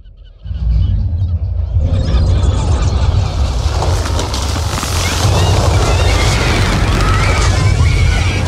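Film sound of an approaching tsunami: a deep rumble starting about half a second in and swelling into a loud, dense rushing noise, with short high cries rising and falling over it in the second half.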